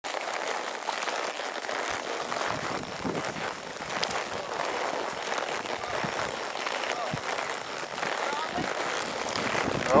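Steady rustling, crackling noise of a horse being ridden along a brushy wooded trail, with leaves and branches brushing past and a few soft knocks scattered through.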